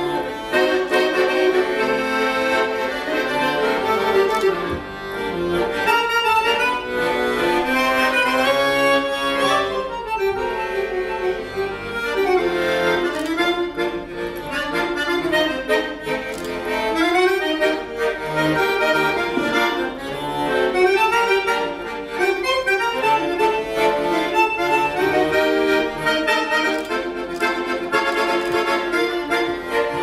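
Beltuna chromatic button accordion played solo: a continuous flowing tune with quick runs of notes over sustained chords.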